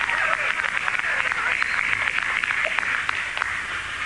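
Hissing, crackling radio static in a narrow, tinny band with faint indistinct voices under it: a space-to-ground radio link with mission control.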